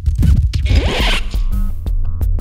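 Electronic intro jingle with a heavy bass. A short rasping sound effect comes about half a second in, and after it a steady beat of sharp clicks over held notes sets in.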